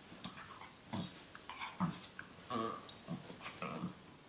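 A small terrier waking in its bed, making a string of short snuffling and grunting noises as it rolls and stretches, with one longer pitched whine about two and a half seconds in.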